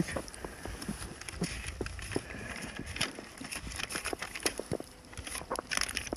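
Irregular soft clicks and rustles of close handling as banknotes and wrapped chocolate bars are passed over a vendor's tray, over a low rumble.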